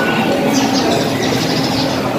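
Loud, dense hubbub of a crowd packed into a hall, with short shrill high sounds breaking through several times.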